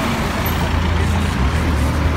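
A car driving past close by, its engine and tyres making a steady low rumble with road noise.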